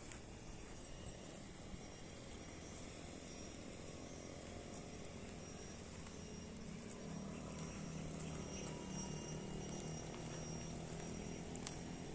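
Faint outdoor ambience: insects making thin, steady high tones over a low background, with a distant engine hum that grows louder from about seven seconds in.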